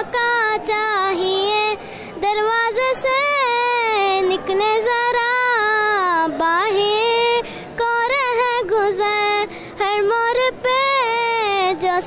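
A young girl singing an Urdu/Hindi film song unaccompanied, long held notes that waver in pitch, with short breaks between phrases.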